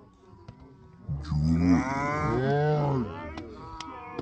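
Several men shouting together in one long, drawn-out yell that starts about a second in and lasts about two seconds, cheering a cricket ball hit high for a six.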